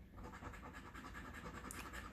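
A coin scraping the scratch-off coating from a paper lottery ticket: faint, steady scratching.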